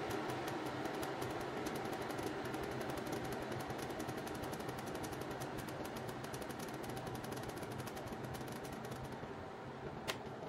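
Glass electric kettle heating water: a steady rushing with rapid crackling and popping from the heating element, thinning out near the end, then one sharp click right at the end.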